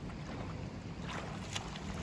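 Faint steady background noise of outdoor pool water and light wind on the microphone.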